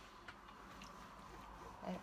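Faint steady hiss from a mini travel steam iron releasing steam, with light rustling and a few soft ticks as a fabric scarf is handled.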